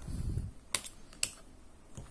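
A low dull bump, then two sharp plastic clicks about half a second apart, as the fold-out stand on the back of a Kwumsy S2 laptop screen extender is prised open.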